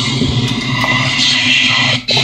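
Music playing loud through a Logitech Z-5500 5.1 speaker system set to its Pro Logic II Music effect, heard as a dense wash without a clear tune.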